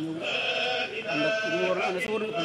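A man's voice chanting a prayer in long, wavering held notes that slide between pitches.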